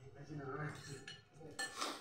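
Metal spoon scraping and clinking against a plate, loudest near the end. A man's voice is heard briefly in the first half.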